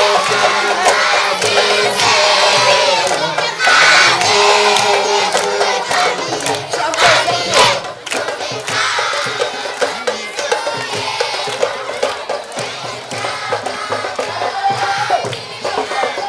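A crowd of excited children shouting and cheering all at once, louder for the first half.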